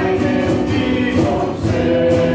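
A small mixed choir of men and women singing a gospel song together, the voices holding steady sung notes.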